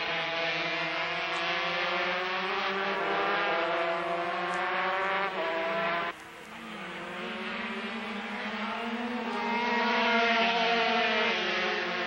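A pack of 125 cc two-stroke racing motorcycles (Yamaha TZ125 and Honda RS125) running at high revs, the engine pitch sliding up and down through the corners. About six seconds in the sound drops sharply and changes, then builds again as the bikes come closer, loudest near the end.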